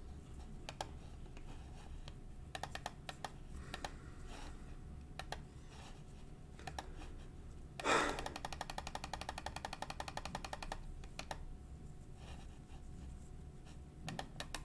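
Quiet clicking at a computer keyboard: scattered keystrokes, then a louder thump about eight seconds in followed by a rapid run of clicks lasting nearly three seconds.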